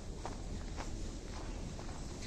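Footsteps crunching on packed snow, about two steps a second, from someone walking at an even pace.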